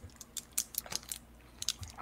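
Faint, scattered clicks and taps, a handful spread over two seconds, over a low steady hum.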